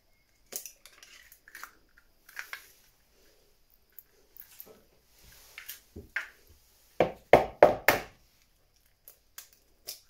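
Eggs being cracked into a mixing bowl: small shell cracks and clicks, then a quick run of four sharp knocks about seven seconds in as the next egg is tapped against the bowl.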